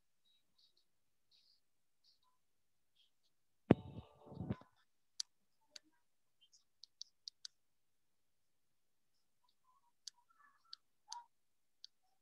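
Scattered sharp clicks, like mouse clicks on a computer, heard over a video call. About four seconds in there is one loud knock followed by a short rustle, like a microphone being bumped or handled.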